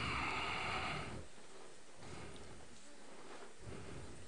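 Quiet room tone of a large hall. The echo of an amplified voice dies away in the first second, then there is only a low, steady background with faint stirrings.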